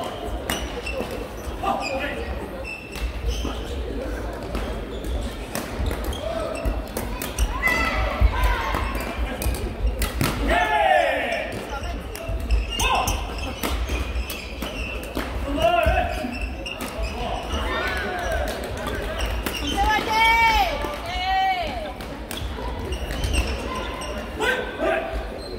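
Busy indoor sports hall during badminton play: scattered sharp racket-on-shuttlecock hits and shoe squeaks on the wooden court floor, with voices of players and spectators in the echoing hall.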